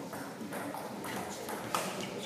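Table tennis rally: the ball clicking off the bats and the table in quick succession, a few clicks a second, with a sharper hit near the end.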